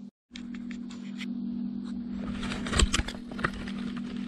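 Old, brittle paper placards being handled and shifted on a workbench: scattered crackles and scrapes that grow busier about halfway through, over a steady low hum. The sound cuts out completely for a moment right at the start.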